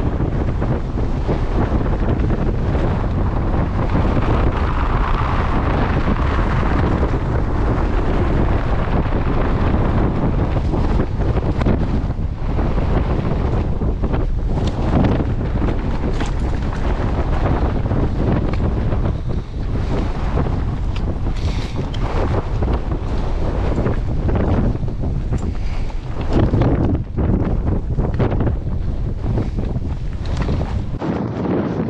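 Strong, gusty mountain wind buffeting the microphone: a loud, continuous rumble that swells and dips with the gusts. The wind is strong enough to threaten to knock a hiker off his feet.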